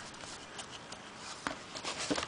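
Faint rustling of a folded paper card being handled and opened in the hands, with a few light clicks.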